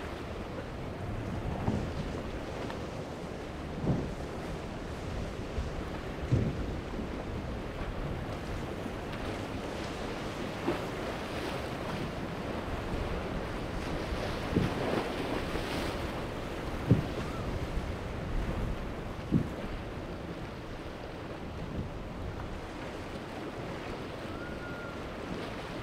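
Choppy inlet surf and wind buffeting the microphone: a steady rushing noise, broken by a handful of short, sharp thumps.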